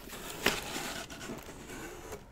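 A cardboard mailer box being handled and opened: a sharp knock about half a second in, then soft scraping and rustling of cardboard as the lid is lifted.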